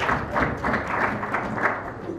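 Applause from deputies in the chamber: a steady patter of many hands clapping, fading slightly toward the end.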